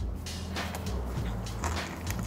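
Quiet background music with a steady low bass line, under faint mouth sounds of a big bite into a burger being chewed.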